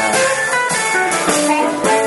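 Live electric blues band playing a short instrumental fill between vocal lines: electric guitar with drum kit, steady held notes.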